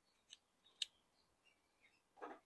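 A small hand cutting tool clicking against a thin guava stem as it is cut for grafting: two short crisp snips about half a second apart, the second louder.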